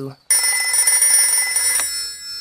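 A cartoon telephone ringing: one steady ring of about a second and a half that begins just after the start and cuts off near the end.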